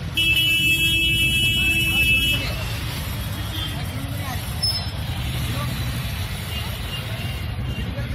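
A vehicle horn sounds one steady blast of about two seconds near the start, over street traffic rumble and crowd voices. The street noise carries on after the horn stops.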